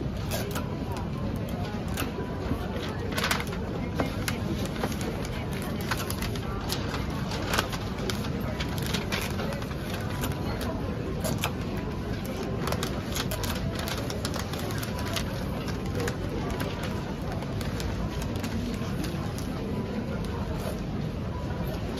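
Wrapping paper rustling and crinkling as it is folded and creased around a cardboard gift box, with scattered sharp clicks and snaps of the paper and tape, over a steady background murmur.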